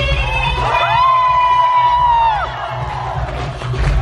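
Live music with a heavy bass beat over a PA, with a crowd cheering. About a second in, a voice glides up into a long high held note for over a second, then drops away.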